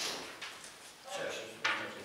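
Faint voices in a meeting room, with a sharp knock about three-quarters of the way through.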